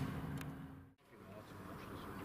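Faint background noise with a steady low hum, fading out to a moment of silence about a second in, then faint outdoor background noise.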